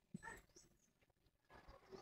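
Near silence, with one faint, brief sound just after the start and faint low noise rising near the end.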